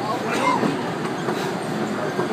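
Small amusement-park train running along its track, heard from an open passenger car: a steady rumble of wheels on the rails.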